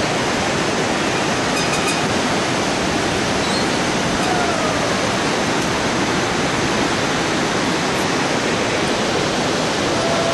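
Whitewater river rushing through the gorge below: a loud, steady, unbroken rush.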